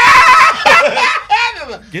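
A woman laughing loudly, loudest in the first moment and tailing off, with voices talking over it.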